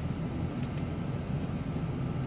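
Steady engine and road noise of a city bus heard from inside its cabin while it drives along in traffic.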